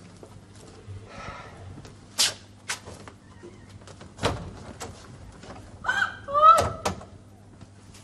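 A door being opened and shut: scattered clicks and knocks, with a loud clack of the latch about four seconds in. About six seconds in, a woman gives a short, high startled cry as the door opens on her.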